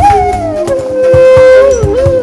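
Instrumental break in a film song: a single held lead melody that slides down in pitch partway through, over regular drum hits and bass.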